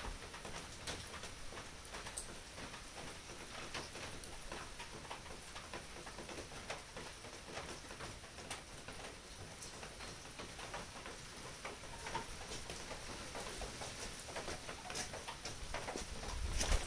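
Wood fire crackling with frequent irregular small pops, over a steady patter of rain.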